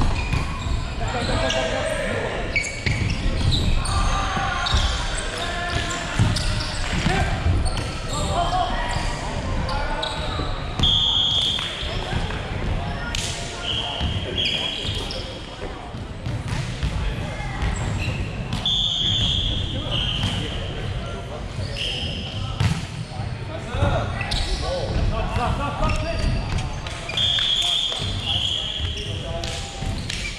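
Indoor volleyball play in a large sports hall: the ball is struck with sharp smacks, there are short high squeaks of sneakers on the hardwood court, and players call out to each other without clear words.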